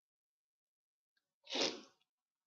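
A man sneezing: one short, sharp burst about one and a half seconds in.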